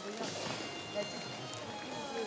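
A horse cantering on turf, its dull hoofbeats under a background of voices and music from the arena, with one louder thud about a second in.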